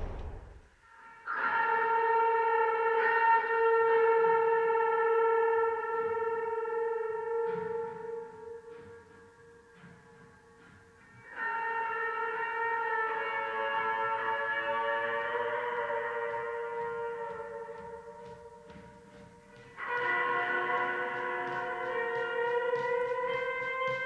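Electric guitar through effects playing three long chords, each struck and left to ring out slowly: one about a second in, one about halfway, and one near the end.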